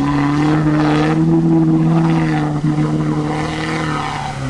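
Lada Niva's four-cylinder engine held at high, steady revs under load as the car pushes through a muddy river ford, with water splashing around the wheels.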